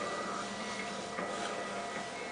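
Quiet room tone with a faint steady high-pitched electronic whine and a few soft rustles of movement.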